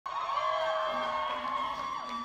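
Audience cheering and screaming, many high voices whooping over one another.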